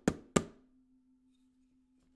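A wooden spoon knocking on kitchen bowls used as a homemade drum: two quick sharp knocks in the first half second, over a low steady ringing tone that hangs on.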